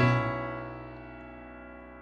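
Software piano chord held on the sustain and slowly fading away.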